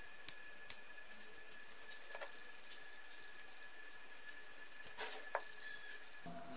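Faint handling sounds of a small metal ring being worked onto a stuffed fabric bow: a few light, spaced-out clicks and soft rubbing, two of the clicks close together near the end.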